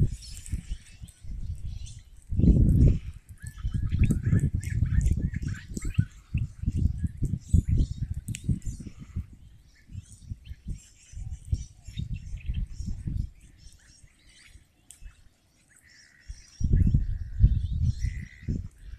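Outdoor wind buffeting the microphone in irregular gusts, easing briefly near the end, with birds chirping faintly throughout.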